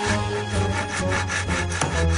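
A saw cutting through wood in rapid, even back-and-forth strokes, with soft background music under it.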